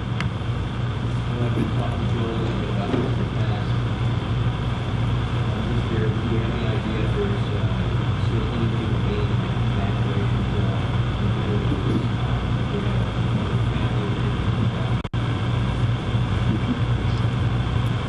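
A steady low hum fills the room, with faint, distant speech from an off-microphone audience member asking a question. The sound drops out for a moment late on.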